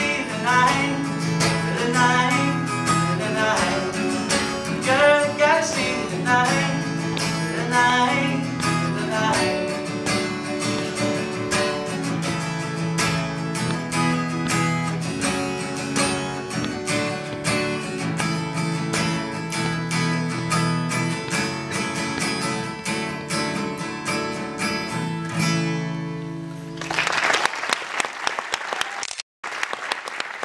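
Acoustic guitar strummed in a repeating pattern to close a song, with a voice singing over it through roughly the first third. The song ends about 27 seconds in and audience applause follows.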